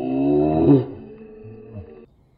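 A man's drawn-out yell as food is dumped on his head. It rises in pitch, is loudest just under a second in, trails off lower and is cut off abruptly at the end.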